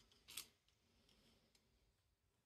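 Near silence, with one faint short snap about a third of a second in as a rubber band is stretched over 3D-printed plastic cam followers and segments.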